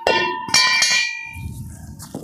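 A steel chaff-cutter gear wheel dropped onto iron, clanging and ringing. It strikes at the start and again about half a second later, then the ring fades. The gear comes through the drop test unbroken, unlike a cast one.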